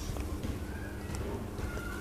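Light handling noise from a DSLR camera body being turned over in the hands: faint scattered taps and rubs over a low steady background hum.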